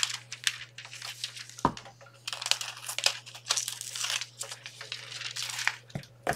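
A thin sheet of Deco Foil transfer foil crinkling as it is handled and cut to size: a run of irregular crackles and rustles.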